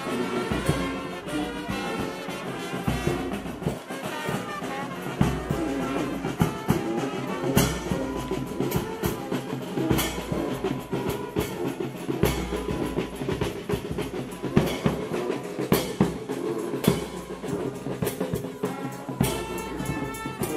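Brass band of trumpets, trombones and a sousaphone playing on the march, with drums beating along.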